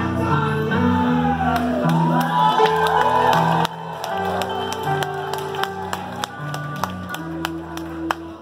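Live band playing an instrumental passage with a steady, stepping bass line, heard from within the audience. Over the first few seconds audience members whoop and shout, then the sound drops in level suddenly.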